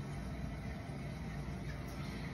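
Steady low background hum with no singing, at a low level.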